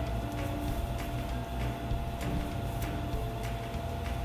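Cotton yukata fabric and a waist cord rustling as they are handled and tied at the waist, with several short scratchy sounds over a steady low hum.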